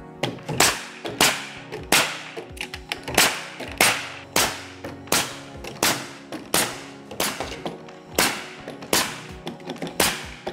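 Pneumatic coil nailer firing nails through a wooden panel into the door frame: about fourteen sharp shots, roughly one every two-thirds of a second.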